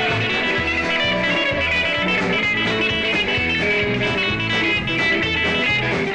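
Live rock and roll band playing: electric guitars over bass guitar and drums, a steady beat throughout.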